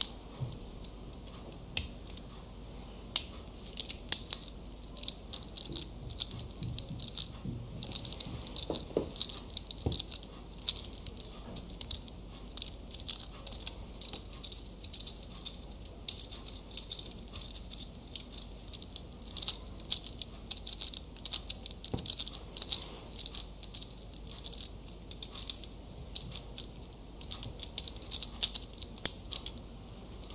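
Fingers handling and tapping a small hard object close to the microphone: rapid, crisp clicks and rattles, sparse at first and almost continuous from about eight seconds in.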